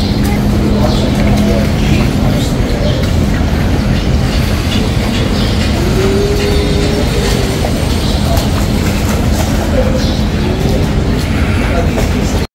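Steady, loud low rumble and hiss of outdoor background noise, with a faint brief tone about six seconds in.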